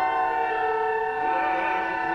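Chamber wind ensemble of flutes, cor anglais and clarinets holding a sustained chord of several steady notes, the upper notes shifting slightly about a second in.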